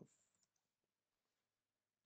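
Near silence, with a few faint computer-key clicks in the first half second as a command is finished and entered.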